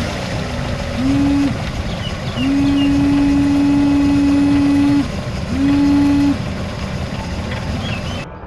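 Electric windshield washer pump of a 2003 Toyota Corolla whining in spurts as it sprays, three times, the middle spurt about two and a half seconds long, each starting with a quick rise in pitch. A steady low rumble runs underneath.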